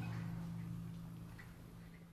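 The last notes of an alto saxophone and percussion ensemble dying away in the room's reverberation, fading to a faint steady low hum with a couple of soft ticks near the end.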